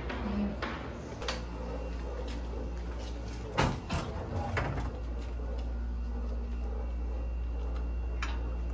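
Door and handling knocks: a few sharp clicks and a loud knock about three and a half seconds in, with smaller knocks just after, over a steady low hum.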